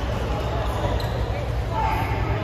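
Steady low hum of a badminton hall, with faint voices near the end.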